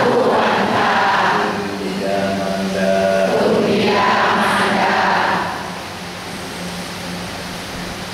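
Buddhist devotional chanting: voices intoning on one steady pitch in long held phrases, getting quieter about two-thirds of the way through.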